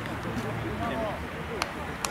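Faint voices of footballers calling out on the pitch, with one short sharp knock about a second and a half in.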